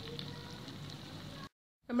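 Mutton masala sizzling faintly in a wok on a gas burner after stirring stops. It cuts off suddenly about a second and a half in.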